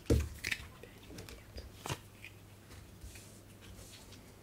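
Cardboard board-game coin pieces being taken from the supply and laid on a table: a few light taps and rustles, the clearest at the start, about half a second in and about two seconds in.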